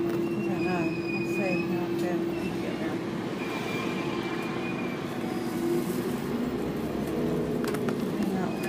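Steady drone of a bus engine heard inside the passenger cabin of a double-decker bus. A thin high whine comes and goes twice over it.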